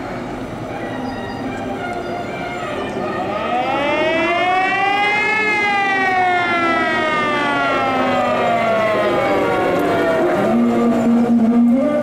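Siren of a vintage fire engine winding up to a peak over about two seconds and then slowly winding down, over steady background noise.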